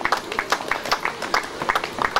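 Scattered hand clapping from a few spectators: sharp, irregular claps, several a second, greeting a runner at the finish.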